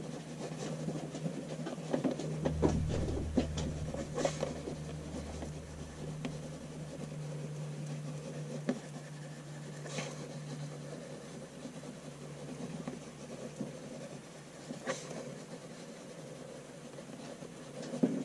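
Soft HB graphite pencil scratching continuously across paper as looping handwriting is scribbled over earlier lines, with small ticks as the lead catches. A low hum sits underneath from a couple of seconds in until about halfway through.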